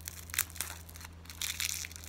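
Plastic wrapper of a Chupa Chups lollipop crinkling and crackling in short bursts as fingers pick and peel it off the candy, busiest about a second and a half in. The wrapper is stiff and sticking to the old candy.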